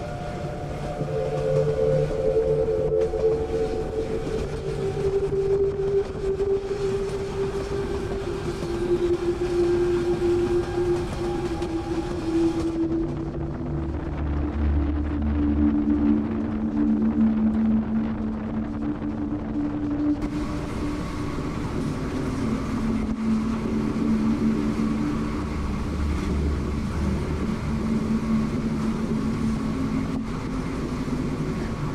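Running noise of a moving passenger train, heard from its open door, under a steady engine whine that falls slowly in pitch over the first two-thirds and then holds level.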